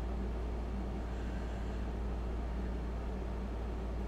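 Steady low hum with a faint even hiss and no distinct events: the room's background noise.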